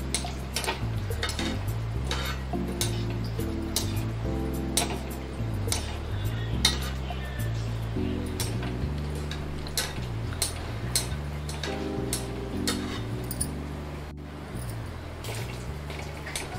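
Background music with a slow low melody, over irregular light clinks, about one or two a second, of a perforated metal ladle tapping against a metal kadai while a fritter is turned in the frying oil.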